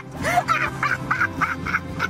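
A woman laughing in a quick run of six or seven short bursts, over background music.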